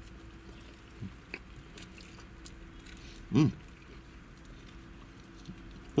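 A person chewing a large mouthful of beef burrito in a soft flour tortilla, with quiet mouth clicks, and one hummed "mmm" of approval a little over three seconds in.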